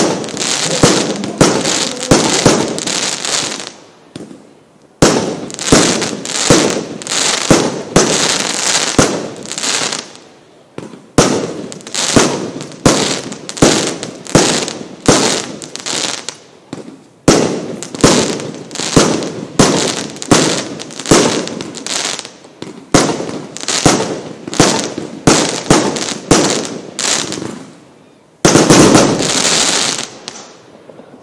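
A combination firework cake ('Show combination B' from Worlds Toughest Fireworks) firing shot after shot, about one to two a second, each burst fading away before the next. The shots come in several volleys split by short pauses, and a louder, denser volley comes near the end.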